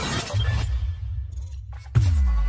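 Intro music and sound effects: a deep bass tone sets in about half a second in, then a sharp crash-like hit near the end, the loudest moment, followed by a falling sweep.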